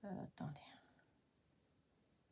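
A woman's brief hesitant "euh", then near silence: room tone.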